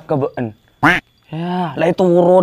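A man's voice in short stretches of vocal sound, with a brief sharp hiss about a second in.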